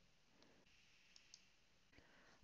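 Near silence, with a few faint computer-mouse clicks.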